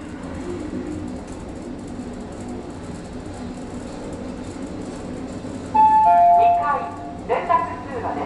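Lift car running with a steady low hum, then a two-note arrival chime, higher note then lower, about six seconds in, followed by a voice announcement as the car reaches its floor.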